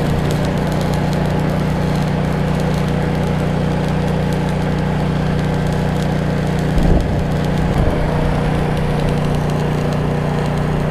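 Stick welding arc crackling while an engine drones steadily. There are two brief low bumps about seven and eight seconds in.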